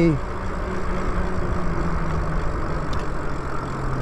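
Wind and tyre noise from an electric bike ridden along a paved road, a steady rushing, with a low steady hum under it that sinks slowly in pitch.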